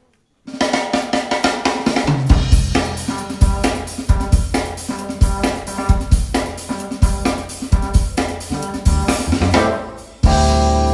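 A live band starts a piece: the drum kit comes in about half a second in with a busy beat, and electric bass notes join about two seconds in, with keyboard and violin playing along.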